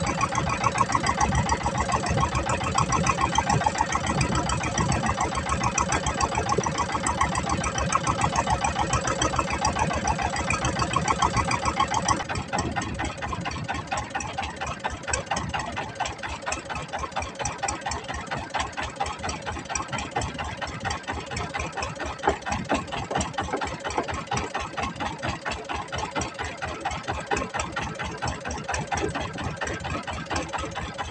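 A small fishing boat's engine running under way at trolling speed, with a rapid, even chugging; it becomes a little quieter about twelve seconds in.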